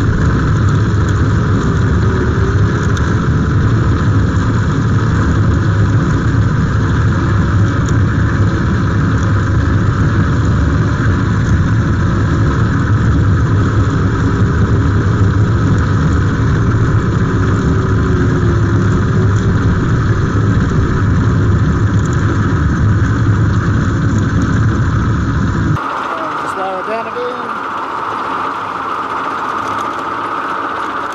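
David Brown 880 tractor converted to electric drive, running along with its PTO-driven slasher mower spinning and cutting grass: a steady, loud mechanical hum. Near the end the sound drops suddenly to a quieter level.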